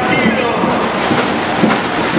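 Loud, steady crowd noise: many voices shouting and cheering together in a large hall.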